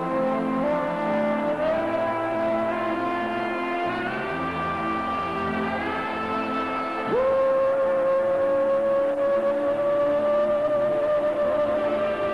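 Live band playing a slow pop ballad with a sustained instrumental lead melody over keyboards and bass. The lead steps upward through several held notes, then about seven seconds in slides up into one long held note, the loudest part of the passage.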